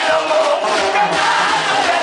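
Banda sinaloense music played live and loud through a PA: wind instruments hold notes over a bass line that steps from note to note, with a male lead singer on microphone.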